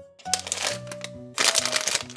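Foil blind-bag packet crinkling as it is picked up and handled, in two stretches, the second louder, over light background music.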